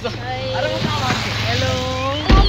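A motor vehicle's engine and tyres running close by, a steady noise with a low hum throughout, with voices faintly under it.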